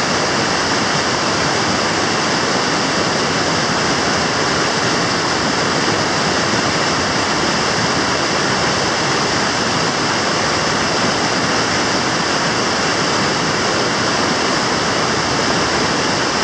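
Rushing whitewater rapids on a high, muddy river: a loud, steady roar of churning water with no break or change.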